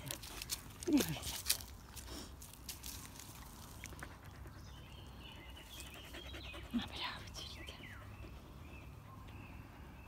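A voice speaking softly to a dog, a short word about a second in and "bravo" said twice near seven seconds, over a faint outdoor background. Light clicks and rustles in the first second and a half.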